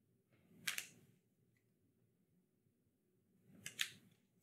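Near silence broken by two brief rustles of a laminated flash card being handled, one just under a second in and one near the end.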